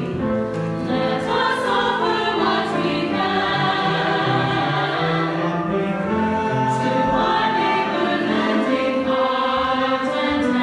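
Mixed choir singing an anthem in parts, accompanied by a flute, with long held notes.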